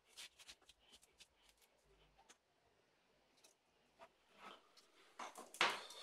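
Faint, scattered crackles and light taps of a cellophane sheet and ruler being handled on a cutting mat, with a louder rustle near the end.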